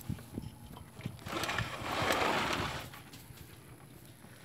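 Handling noise from a handheld phone camera: a few soft knocks, then a swell of rubbing, scraping noise lasting about a second and a half as the phone's microphone brushes against clothing.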